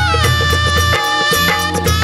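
Instrumental passage of a Marathi Vitthal devotional song (bhaktigeet): a held melody line that slides down in pitch at the start, over a steady percussion beat and bass.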